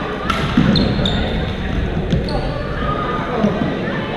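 Badminton play on a sports-hall court: a sharp racket hit on the shuttlecock early on and a fainter one about two seconds in, with short shoe squeaks and footfalls on the court floor, over a steady babble of voices echoing in the hall.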